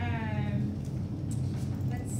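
A person's voice making one drawn-out vocal sound that falls in pitch, lasting under a second at the start, over a steady low room hum.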